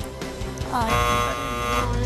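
Game-show buzzer sound effect: a single harsh, horn-like tone that starts with a brief upward glide about three quarters of a second in and holds for about a second. It sounds over background music and signals that the contestants have failed to answer in time.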